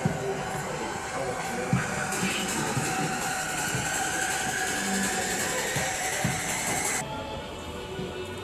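Background music laid over the footage: a dense, noisy electronic texture with a few held tones, one rising slowly, which cuts off suddenly about seven seconds in.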